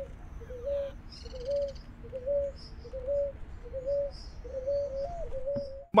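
A bird calls a short, low note over and over at an even pace, about three notes every two seconds, with a few faint high chirps about a second in.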